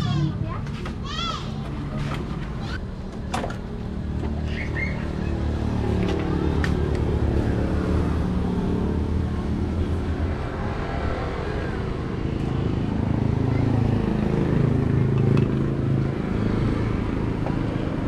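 A motorcycle engine running, its pitch rising and falling, with a few sharp metallic clicks from work on the bike.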